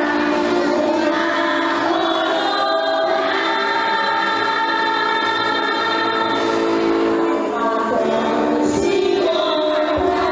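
Choir singing a slow hymn, with long held notes.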